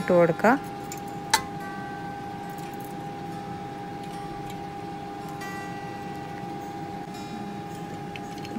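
Steady background hum holding a few fixed tones, with a single sharp click a little over a second in and two short spells of faint high ringing tones.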